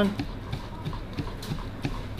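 Knife chopping English spinach on a plastic cutting board: a quick, irregular run of light knocks as the blade strikes the board, about three or four a second.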